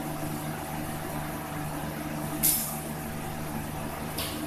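A steady mechanical hum with several held low tones fills the room. About two and a half seconds in there is one short, sharp clatter of small metal worship vessels being handled.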